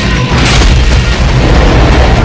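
Loud, dense soundtrack mix of deep booming impacts over music, with a sharp hit about half a second in, as two animated dinosaurs clash.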